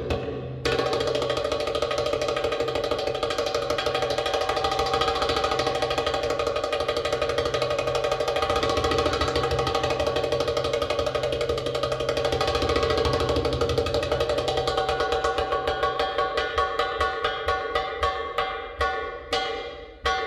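Recorded Arabic drum-solo music on darbuka (Arabic tabla): a fast continuous roll with steady ringing tones, breaking into separate, spaced strokes near the end.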